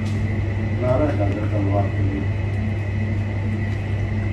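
Steady low room hum, with a person's voice speaking briefly in the background about a second in.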